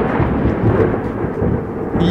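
Thunder rumble used as a dramatic sound effect, a continuous low roll that grows duller as it goes.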